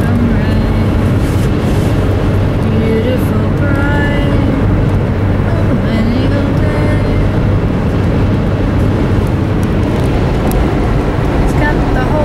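Steady road and engine noise inside a car's cabin at highway speed, with a constant low hum. A voice carries a slow tune on and off over it.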